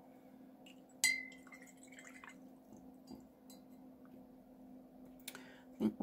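A paintbrush being rinsed in a glass water jar: one sharp, ringing clink of the brush against the glass about a second in, then a few faint ticks and water sounds, over a steady low hum.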